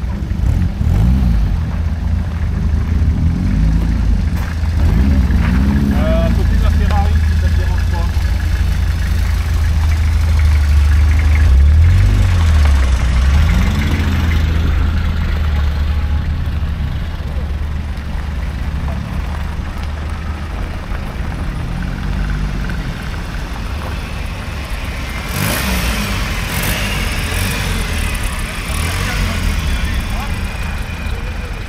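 Classic car engines idling and being revved in turn as cars pull away at low speed, over a steady low engine rumble that is loudest about twelve seconds in. A short, harsher noisy burst comes about 26 seconds in.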